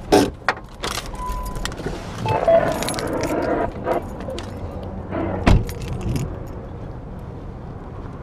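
Car keys jangling and clicking as the driver gets out of a Jeep, with a short steady electronic beep about a second in. A single heavy thump comes about five and a half seconds in.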